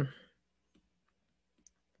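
A few faint, sparse clicks of a stylus tapping on an iPad's glass screen while writing.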